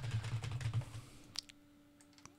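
Computer keyboard typing: a quick run of keystrokes for about the first second, then two more taps, and it stops.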